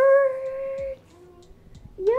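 Pet parrot squawking: one loud, long, steady-pitched call lasting about a second, then a fainter lower call, and a new rising call starting at the very end.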